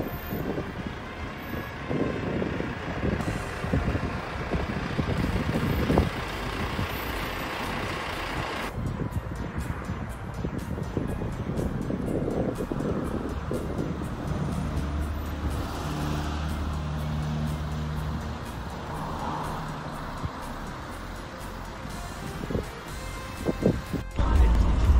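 Road traffic: cars driving past on a city street.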